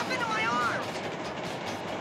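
A short, high-pitched wordless vocal sound in the first second, over the steady running noise of a railway caboose rolling along the track.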